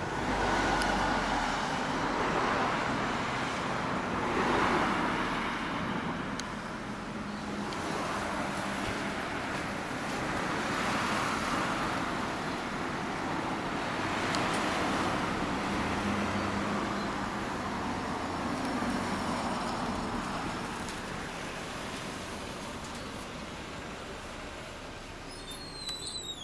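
Motorcycle engine and street traffic noise, swelling and fading several times.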